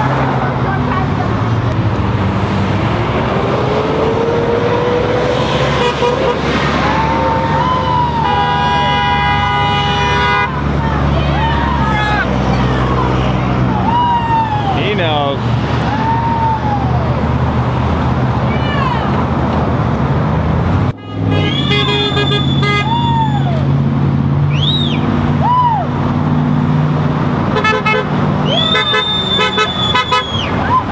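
Traffic passing through an intersection, with passing drivers honking their car horns in support of the roadside rally: several held honks, the longest about two seconds. People on the corner answer with short whoops.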